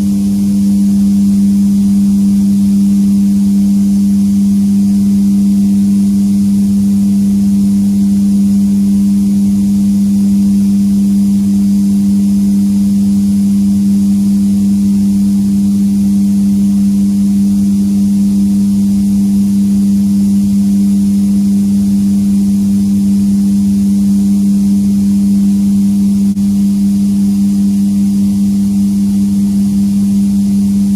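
Steady, loud machine hum with a low drone, typical of a paint booth's ventilation fans running.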